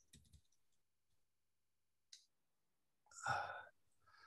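Near silence with a couple of faint clicks, then a man's hesitant, breathy "uh" near the end.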